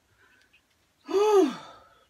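A woman's loud voiced sigh of relief about a second in. Its pitch rises, then falls, and it trails off.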